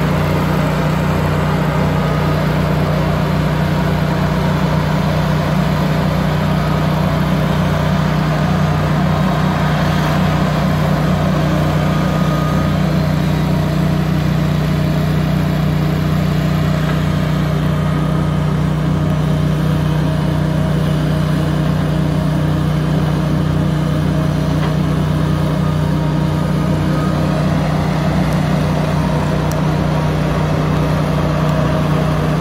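Diesel engine of a John Deere knuckleboom log loader running steadily while it handles logs, a constant low drone with no breaks.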